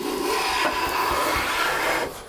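A No. 5 jack plane taking one long, steady stroke along the edge of a board, the iron shearing a continuous shaving with an even rasping hiss. It is a full shaving from end to end, the sign that the edge is now straight.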